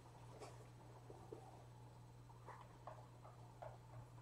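Faint light ticks and scratches of a stylus writing on a tablet screen, over a steady low hum; near silence overall.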